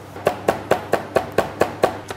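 Knife chopping garlic finely, in quick, even strokes of about four a second.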